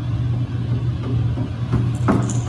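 A steady low hum with faint room noise above it.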